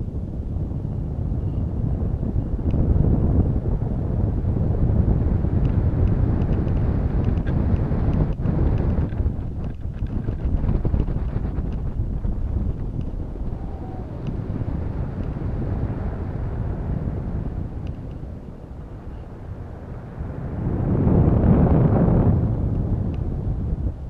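Wind rushing over the microphone of a camera on a balloon payload string as it swings in flight: a steady, uneven low rumble that swells loudest near the end.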